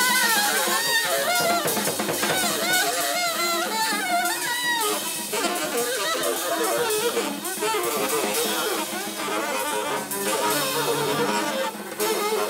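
Free jazz trio playing: a saxophone wailing in bending, wavering lines over busy, free drum kit and cymbal playing and double bass.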